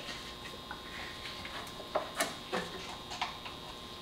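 Light, scattered clicks and taps of the oil separator housing and gasket on a removed intake manifold being handled with gloved hands, the sharpest about two seconds in.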